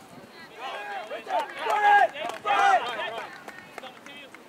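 Shouting voices on a lacrosse field: high-pitched, drawn-out calls, the loudest about two seconds in, then a few short clicks near the end.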